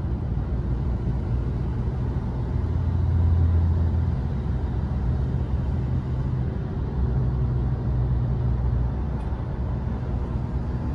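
Steady low road and engine noise inside the cabin of a moving vehicle, swelling slightly a few seconds in.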